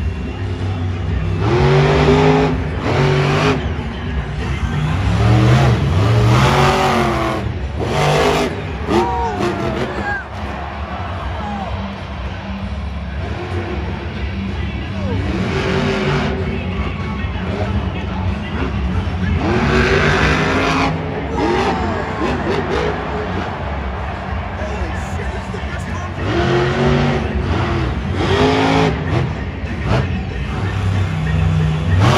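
Monster truck's supercharged V8 revving hard in repeated surges, its pitch climbing and dropping about six times over a steady low rumble.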